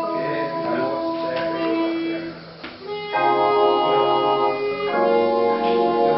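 A duet of chromatic harmonica and a small electronic keyboard. The harmonica plays a wavering melody over the keyboard's sustained, organ-like chords. After a brief lull a little past two seconds, fuller held keyboard chords come in about three seconds in and change again about five seconds in.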